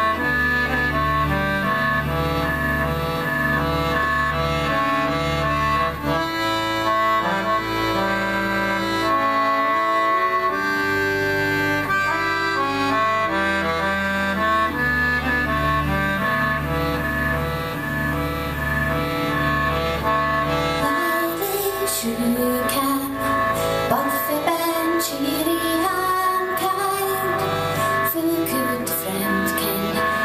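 Live folk music led by accordion: held chords over a repeating low bass figure. About two-thirds of the way in, sharp percussion strokes join and the texture gets busier.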